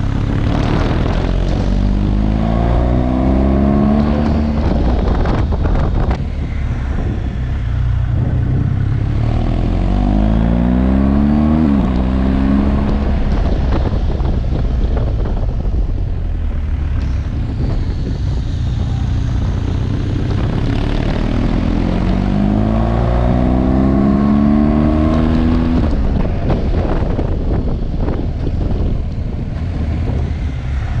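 Large twin-cylinder adventure motorcycle accelerating hard, its engine note rising in pitch three times, with a gear change dropping the pitch about twelve seconds in. Heavy, steady wind rush on the onboard microphone underneath.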